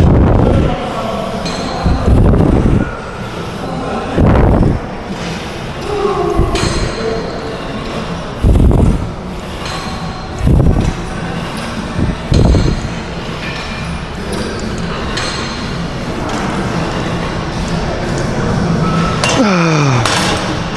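A set of repetitions on a cable chest-press machine: a loud puff or knock about every two seconds for the first dozen seconds, then it stops. Gym background music and chatter run underneath.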